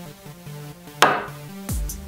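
Electronic background music with a steady synth line, and one sharp strike about a second in: a wooden mallet hitting a steel number punch to stamp a number into a poplar board.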